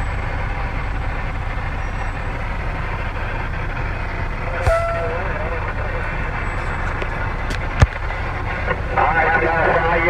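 Steady low rumble of a vehicle cab on the move, engine and road noise, with a sharp knock about eight seconds in.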